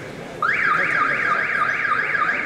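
A shrill siren-like warble that starts about half a second in and sweeps rapidly up and down in pitch, about five times a second.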